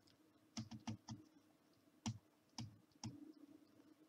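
Faint, scattered light taps and clicks of a pen stylus on a drawing tablet while handwriting, about seven in the first three seconds, against near silence.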